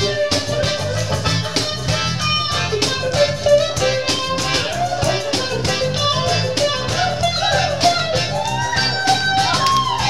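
Live acoustic reggae band in an instrumental passage: a guitar melody with bending notes over evenly strummed chords and a bass line.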